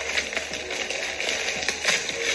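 Wrapping paper on a gift box crinkling and rustling in quick, irregular crackles as the present is handled and opened.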